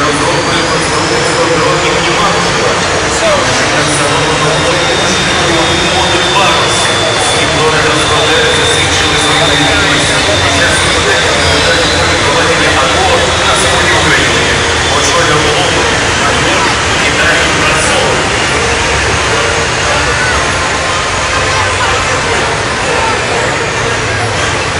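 Tracked armoured vehicles, tanks and self-propelled guns, driving past in a column with steady engine and track noise, mixed with crowd chatter.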